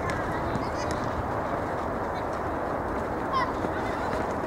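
Steady outdoor noise of a youth soccer game, with a short, high-pitched shout from a player a little over three seconds in.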